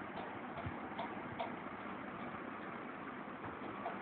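Steady low background hiss of room noise, with a few faint soft clicks in the first second and a half.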